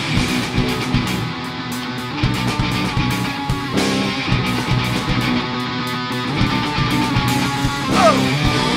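Live rock band playing an instrumental passage: distorted electric guitars and electric bass over a PDP drum kit with steady drum and cymbal hits.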